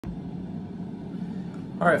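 A steady low hum, with a man's voice starting "All right" near the end.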